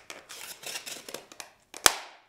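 Two glued pieces of rigid foam insulation board bent apart by hand: a dry crackling and creaking as the foam strains, then one sharp snap near the end as it breaks. The break runs well into the foam itself rather than along the Foam Fusion glue line, the sign of a bond stronger than the foam.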